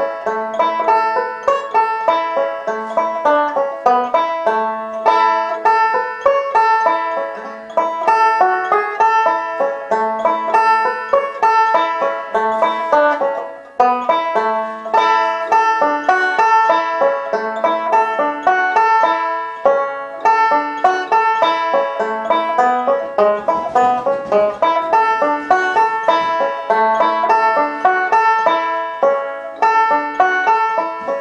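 Banjo played by a child eight weeks into learning, a steady run of picked notes. The playing breaks off for a moment about halfway through, then carries on.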